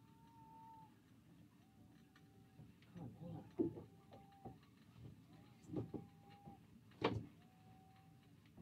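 Sea-fishing reel being wound in short spells, each spell giving a brief steady whine, about every one and a half to two seconds, with a few dull knocks of rod and reel handling between them. A hooked fish is being reeled up from the seabed.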